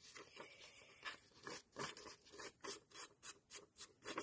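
Fingers pushing small paper scraps out of a freshly die-cut lace pattern in thin yellow paper: faint, irregular scratchy ticks and rubs, a few a second.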